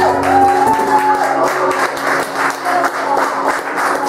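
Closing of an acoustic song: a man's last sung note ends about a second in over strummed acoustic guitar, and the guitar's chords carry on ringing.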